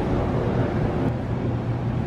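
Steady low hum with an even background hiss, the ambient noise of a large indoor exhibition hall; no single event stands out.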